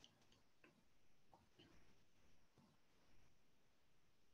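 Near silence: room tone with a few faint, short clicks in the first three seconds.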